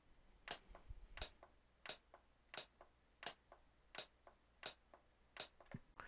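Tap-tempo clicks on an Akai Fire controller driving FL Studio: eight sharp clicks about 0.7 seconds apart, a steady slow pulse, with fainter clicks in between.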